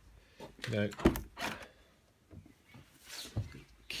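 A Maserati's door being opened: a sharp latch clunk about a second in, followed by softer handling clicks and rustle.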